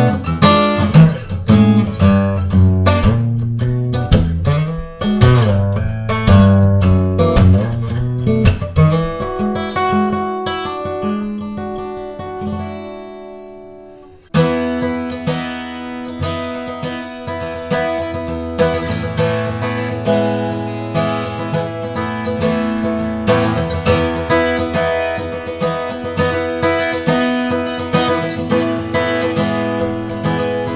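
Solo acoustic guitar with a Sitka spruce top and Bolivian rosewood back and sides, played in an improvised blues-rock style: busy picked lines, then a chord left to ring and fade for several seconds. About 14 seconds in, the playing starts again suddenly with a steady, rhythmic strummed pattern.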